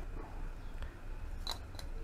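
Faint handling of a metal vernier caliper being set against an aluminium piston, with two small sharp clicks about a second and a half in.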